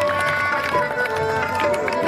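Live Hindustani classical accompaniment for a dance: held melodic notes over a run of tabla strokes.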